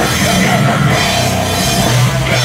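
A rock band playing live and loud, with electric guitar and a drum kit.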